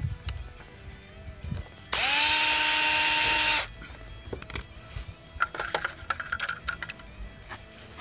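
Cordless drill spinning up and running steadily for under two seconds, about two seconds in, drilling a pilot hole through the textured plastic dive plane for its mounting screw. Light handling clicks and taps come before and after it.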